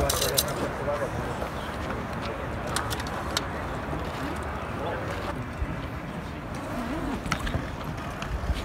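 Open-air ambience of a rugby training session: faint distant voices over a steady low rumble, with a few sharp knocks, near the start, around the middle and near the end, from players handling the ball.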